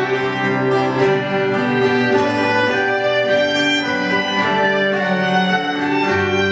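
Live Irish instrumental music: a fiddle playing the melody, with a bowed cello bass line and a plucked cittern accompanying.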